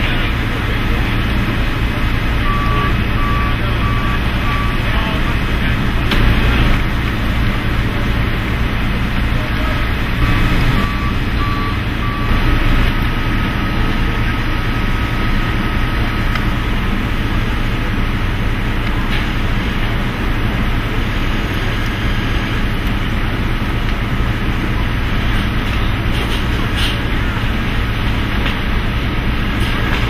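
Steady engine noise from forklifts working around a box truck during a load-out. A reversing alarm beeps in two short runs, a few seconds in and again about ten seconds in.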